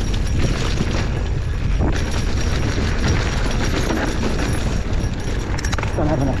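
Wind buffeting the microphone of a mountain bike moving fast downhill, with a steady low rumble. Tyres run on the dirt singletrack and the bike rattles in quick knocks over the bumps.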